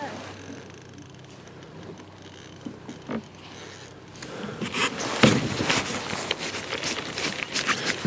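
A fishing reel being cranked on a bent rod while playing a possible fish. Irregular clicking and scraping starts about halfway through and gets louder, after a quiet first half with a couple of faint clicks.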